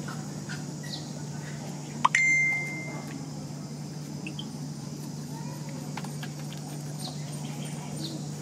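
About two seconds in, a sharp click followed by a loud, high ringing beep-like tone that lasts about a second and fades, over a steady low hum and faint scattered chirps.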